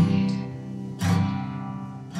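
Acoustic guitar strummed between sung lines: two chords about a second apart, each left to ring out.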